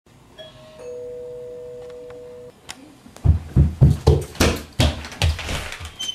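A two-note ding-dong doorbell chime: a higher note, then a lower one joining it, both held until they cut off about two and a half seconds in. Then a quick run of heavy footsteps thudding down the stairs, about three a second.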